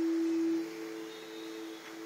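A steady low hum-like tone, loudest for the first half-second, joined by a second, slightly higher steady tone about half a second in.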